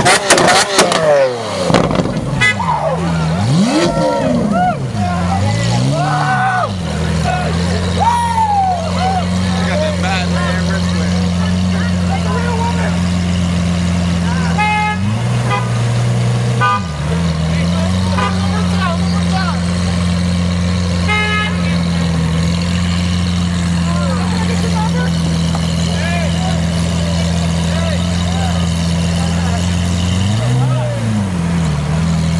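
Lamborghini Aventador V12 with an IPE aftermarket exhaust, loud: a high rev falls away at the start, two short throttle blips follow, then it settles to a steady idle. A brief blip comes in the middle and another near the end.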